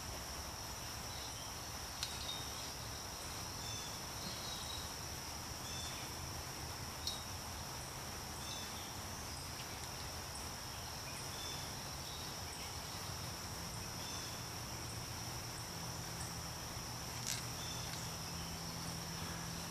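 Steady high-pitched insect chorus droning without a break, with a few faint knocks from a burlap-wrapped wire tree cage being handled and set in place.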